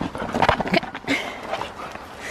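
Siberian huskies playing with a hard plastic horse ball on gravel: a cluster of knocks and scuffling, the loudest about half a second in, with brief dog vocal sounds.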